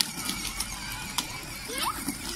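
Small electric motor of a child's battery-powered ride-on toy motorbike running with a steady thin whine as it drives along. A single click comes about a second in, and a short rising voice call near the end.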